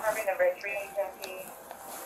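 Faint, indistinct speech: a voice talking quietly, too unclear for the words to be made out.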